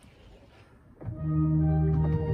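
Canterbury Cathedral's new pipe organ starting a piece about a second in: sustained chords of several held notes with a strong bass, entering suddenly after a quiet first second.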